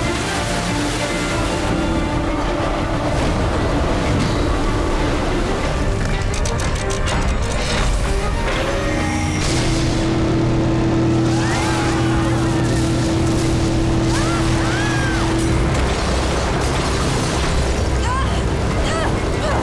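Dramatic action music over battle sound effects: booms and crashes of explosions and impacts, with a cluster of sharp strikes about six to seven seconds in and a held low chord through the middle.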